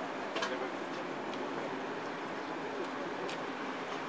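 Steady outdoor background noise with faint, distant voices and a few brief clicks.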